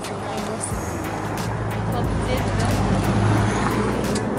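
A vehicle engine running with a steady low hum, mixed with indistinct voices and faint music.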